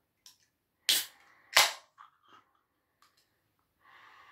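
A 500 ml aluminium can of carbonated cider being opened by its ring-pull: two sharp snaps about a second in, about two-thirds of a second apart.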